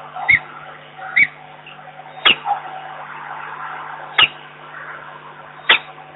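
Peregrine falcon calling: about five short, sharp notes at uneven intervals, over a steady low hum.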